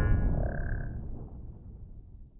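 The low rumbling tail of an intro's boom sound effect fading out steadily, with a brief faint high tone about half a second in.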